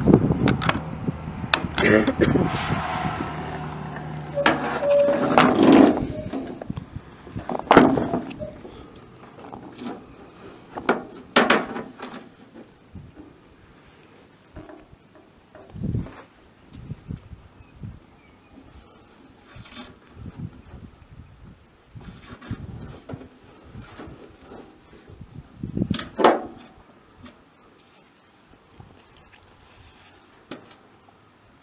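Low, indistinct talk for the first few seconds, then mostly quiet with a few scattered knocks and clicks of handling.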